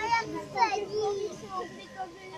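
Children's voices and chatter from onlookers, with high-pitched calls at the start and again about half a second in.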